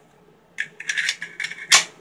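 Metal parts of a Colt M1911 pistol being worked by hand: a run of short scraping and clicking sounds, ending in one sharp, loud metallic click near the end.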